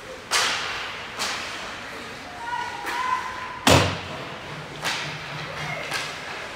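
Hockey puck and sticks knocking against the rink boards, four sharp knocks echoing in the arena. The loudest, with a deep thud, comes a little past halfway.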